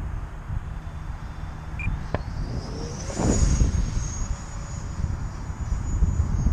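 Wind rumbling on the microphone. About halfway through, the high whine of the E-flite F-4 Phantom II's electric ducted fan rises in and then holds steady.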